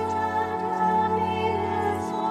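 Sung church music: a voice singing over sustained accompanying chords, the sung responsorial psalm between the readings at Mass.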